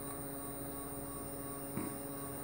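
Steady electrical hum of several fixed tones from an energised stepper motor and its driver on a RAMPS 1.4 board, with a brief faint click just before the end.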